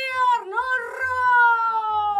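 A woman singing a Romanian folk wedding song, holding a long high note that slowly falls in pitch, after a short break about half a second in.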